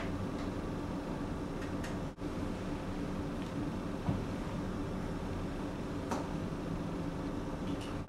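Steady low hum of a quiet room with a computer running, with three faint computer-mouse clicks spread through it as a program is opened from the Start menu. The sound drops out for a moment about two seconds in.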